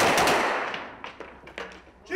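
A dense crackle of rapid gunfire that fades out about a second and a half in, with a few scattered clicks after it.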